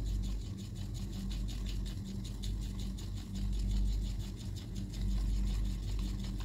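Paintbrush stirring paint round a palette well, a soft quick scratching of small strokes, over a steady low hum.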